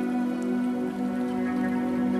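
Japanese-style lofi instrumental music: a held chord of sustained notes over a soft, crackling noise layer.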